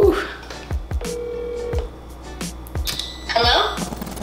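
Phone ringback tone on an outgoing call, one steady electronic beep lasting just under a second, about a second in, played through the phone's speaker. A short burst of voice comes near the end, over background music.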